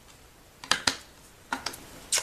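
Sharp plastic clicks and knocks of a distress ink pad being handled and lifted off the craft table: two a little over half a second in, then three more close together near the end.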